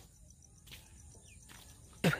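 Near silence outdoors: faint insects chirping in an even high-pitched pulse, with a low rumble and one short faint rising chirp a little after a second in.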